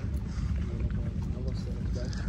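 Outdoor background noise: a low, uneven rumble with faint voices in the background.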